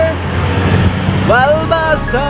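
A moving vehicle's engine and road noise rumbling steadily, with a person calling out in a rising voice near the end.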